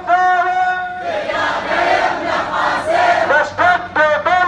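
A crowd of protesters chanting slogans. A single clear voice holds a long line in the first second and starts again near the end, and the massed crowd shouts in between.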